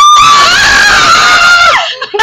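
A person's loud, high-pitched scream, held for nearly two seconds with a short break just after the start. The pitch falls away as it ends.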